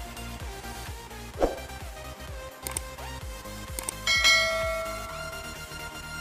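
Subscribe-button overlay sound effect over electronic background music: two sharp mouse clicks about a second apart, then a bell chime that rings out and fades over about a second.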